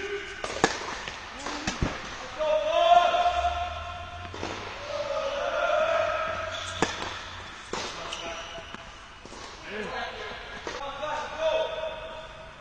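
Tennis ball being hit back and forth with racquets in a rally, a sharp pop every second or two starting with the serve, together with the ball's bounces on the hard court. People's voices run underneath and are loudest about three and six seconds in.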